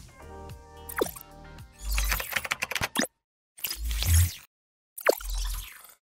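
Outro music, then an animated logo sting of sound effects: three short bursts, each with a low thud, separated by brief silences, with quick falling-pitch sweeps.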